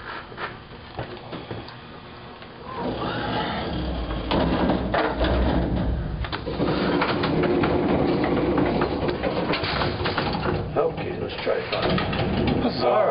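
Muffled, indistinct voices and the clatter of handling in a small metal-walled room. The sound grows louder a few seconds in, and a steady hum joins it about halfway.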